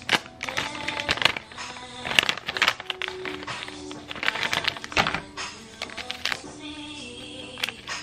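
A plastic pouch of instant matcha latte mix being torn open and handled, with many sharp crackles and rips of the packaging, over background music.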